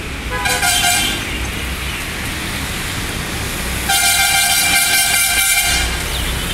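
A vehicle horn honks twice over steady traffic noise: a short toot about half a second in, then a long blast of about two seconds starting around four seconds in.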